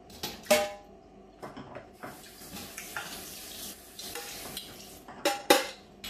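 Cutlery and dishes clinking: two sharp ringing clinks about half a second in and two more near the end, with a soft hiss for about a second and a half in the middle.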